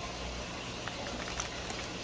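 Steady background hiss with a low hum, and a few faint ticks and crinkles from a plastic fish bag being handled.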